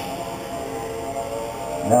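Several radio-controlled 2WD buggies racing at once, their motors making a steady layered whine of many tones.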